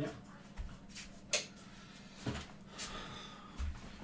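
Faint knocks and thumps of a person getting up and moving about a small room, with one sharp click about a second and a half in, over a low steady hum.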